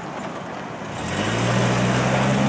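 Toyota Tacoma pickup's engine, coming in about a second in with a steady low hum that grows louder as the truck pulls away.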